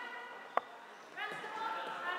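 A single sharp click of a floorball stick striking the hollow plastic ball about half a second in, followed by a player's voice calling out.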